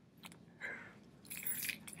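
A pause in the commentary: a faint mouth click, then a short breath drawn in near the end, just before speech resumes.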